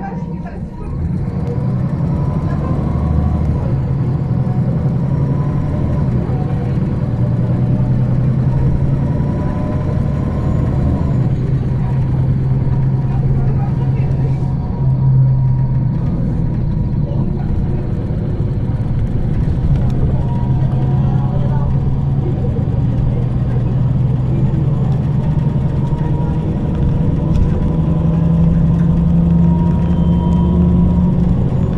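Inside a 2009 MAN 18.310 HOCL-NL city bus on the move: its MAN E2866 compressed-natural-gas engine running steadily, the engine note shifting as the bus speeds up and slows, with a thin high whine alongside.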